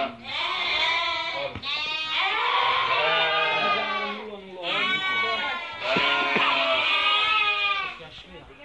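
Sheep bleating loudly in a crowded pen: four or five long, wavering calls, one after another with hardly a gap.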